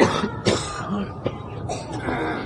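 A person coughing twice, about half a second apart, with smaller throat-clearing sounds after.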